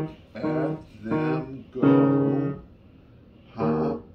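Yamaha grand piano playing a short beginner's tune on the black keys near middle C: three short separate notes, then a louder, longer chord about two seconds in, and another note near the end.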